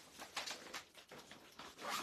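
Clear plastic saree packaging and folded fabric rustling and crinkling as they are handled, in short irregular bursts, with the loudest crinkle near the end.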